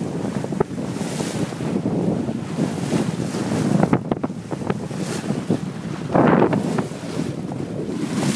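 Bow wave rushing and splashing along a sailboat's hull as it sails, with wind buffeting the microphone; a louder surge of spray comes about six seconds in.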